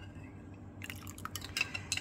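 A metal teaspoon stirring liquid in a glass Pyrex measuring jug, tapping lightly against the glass several times in the second half.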